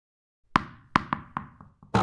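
Animated logo intro sound effects: a quick run of about six sharp knocks with short ringing tails, closer together toward the end, leading to a louder hit at the end.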